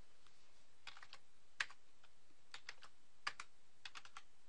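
Computer keyboard keys pressed on the numeric keypad to enter numbers: faint, sharp clicks in small groups of two or three with short pauses between them.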